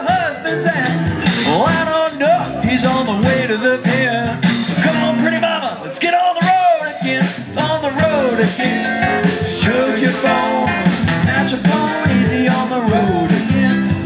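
Live acoustic blues-country band playing: strummed acoustic guitars with an electric guitar, and a voice singing the melody.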